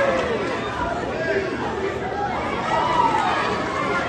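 Crowd of spectators in a hall chattering and calling out, many voices overlapping with none standing out clearly.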